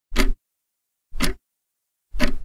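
Loud, regular ticks, one a second.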